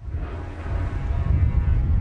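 Jet air tanker's turbofan engines: a deep rumble that starts suddenly and grows louder over the first second as the plane passes low overhead on a fire-retardant drop run.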